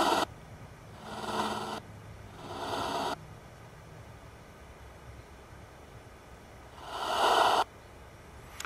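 Bursts of static-laden, garbled sound from a ghost-hunting transcommunication box: four of them, each swelling over about a second and then cutting off abruptly, with a longer gap before the last.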